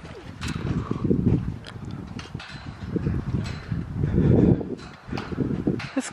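Footsteps on a wet, muddy grass path, heard as a series of low, uneven thuds about once a second.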